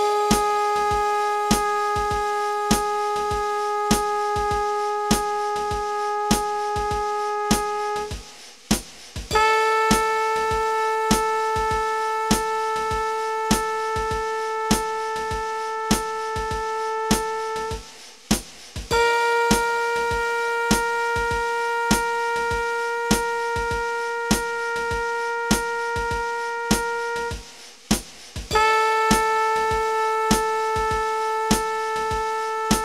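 A long-tone practice track: a steady metronome click under a held pitched tone. Three notes of about eight seconds each are separated by short breaks, with a fourth starting near the end. The pitch steps up from one note to the next and then back down.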